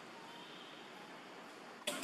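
Quiet outdoor background with a few faint thin chirps, then a sudden loud, high, hissing sound that breaks in near the end.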